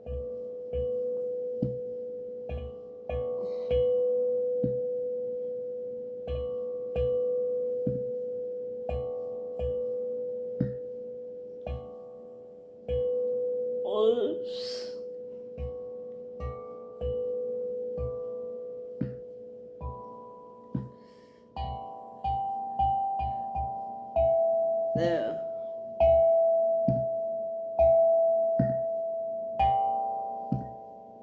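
6-inch, 11-note steel tongue drum in D major struck with a rubber mallet, one ringing note at a time at a slow, uneven pace. For about the first twenty seconds it keeps returning to the same low note, then moves to higher notes.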